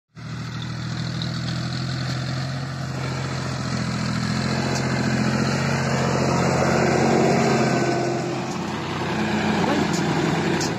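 John Deere 5045 D tractor's diesel engine running steadily under load as its front dozer blade pushes a heap of soil. It grows louder over the first seven seconds or so, then eases off and shifts in pitch.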